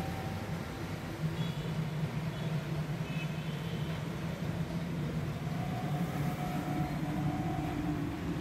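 Steady indoor background noise with a continuous low hum, with faint thin tones drifting in and out above it.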